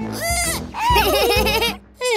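A cartoon character's wordless vocalizing: a wavering, bleat-like voice in two short phrases, over light background music.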